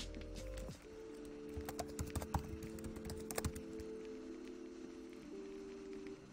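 Computer keyboard typing, a short run of key clicks in the middle, over background music of held chords that change about a second in and again near the end.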